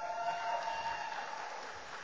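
Audience applause just after a graduate's name is called, with a long held whoop from someone in the crowd during the first second; the clapping fades out toward the end.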